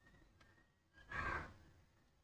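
A person breathing out in a short sigh close to the microphone, about a second in, after a faint click; otherwise near silence.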